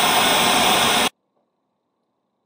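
Loud television static hiss that cuts off suddenly about a second in, leaving near silence.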